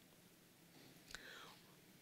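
Near silence: room tone, with one faint, brief sound a little past halfway.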